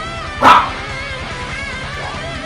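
Electric guitar playing a heavy-metal instrumental with sustained lead lines. About half a second in, a single short, very loud yelp cuts through the music and fades quickly.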